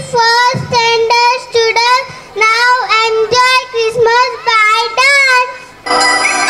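A young girl singing solo into a microphone, without accompaniment: short phrases of held notes, mostly repeated at about the same pitch.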